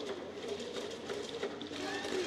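Faint ballpark background sound during a pause between pitches: a steady low haze with a few faint wavering tones, and no sharp knocks.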